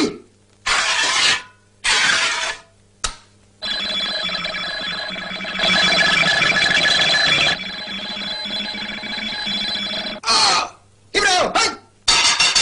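Cartoon sound effects. A few short noisy bursts and a click come first, then about six seconds of continuous ringing, alarm-like sound with a louder middle stretch, then two short bursts that bend in pitch near the end.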